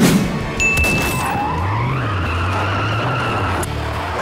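Pickup truck tires squealing as it skids and slides on pavement, opening with a sudden loud hit; the squeal wavers and cuts off shortly before the end.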